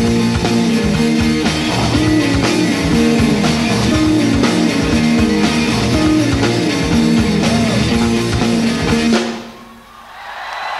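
Live rock band playing the final bars of a song, with drum kit, bass and guitars. It ends abruptly about nine seconds in.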